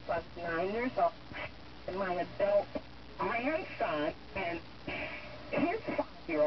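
A talk-radio voice playing from the loudspeaker of a 1930s Western Electric 10A receiver and its UTC LS-2A3 amplifier. The voice sounds narrow and band-limited, with a faint steady low hum beneath it.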